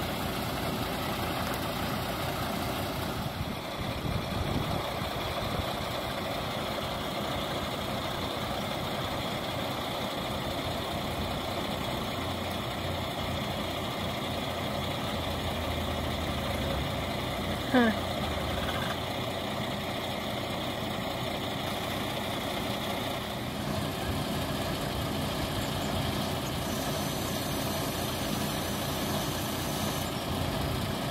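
Heavy truck engine running steadily, powering the hydraulic arms of a Hammar side-loader as they lower a shipping container onto its pads. Near the middle there is one brief, sharp, falling squeak, the loudest moment.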